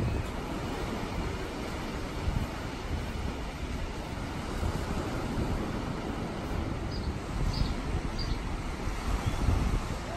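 Wind buffeting the microphone, a gusty low rumble, over the steady wash of ocean surf.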